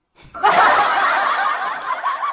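A person laughing: a loud, sustained laugh that breaks out about a third of a second in and slowly dies away.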